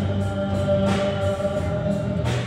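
A live student band playing a song through a PA: a male voice singing held notes over electric guitar, acoustic guitar and keyboard, with occasional drum or cymbal hits.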